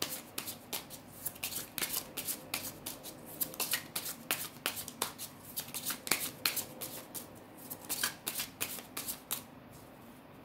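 Deck of oracle cards being shuffled by hand: a rapid, irregular run of crisp card slaps and flicks that stops just before the end.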